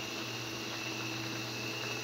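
Coconut-milk broth simmering and bubbling in a wok, a steady soft hiss over a low hum and a thin high whine.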